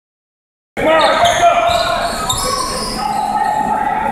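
Basketball being dribbled on a hardwood gym floor during a game, with spectators' voices and shouts ringing in the large hall. The sound starts abruptly about three-quarters of a second in.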